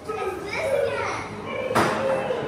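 Children's voices, chattering and calling out, with a single sharp knock near the end.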